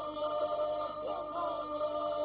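Albanian polyphonic folk singing: a group holds a steady drone while solo voices bend and ornament a melody above it.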